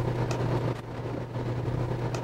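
Steady low drone of a moving police squad car, engine and road noise heard from inside the cabin.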